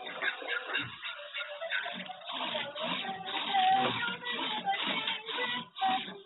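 A song played by a homemade Arduino singing robot through its Adafruit soundboard speaker, heard through a doorbell camera's microphone, which cuts off the high end. A melody runs throughout, with brief gaps near the end.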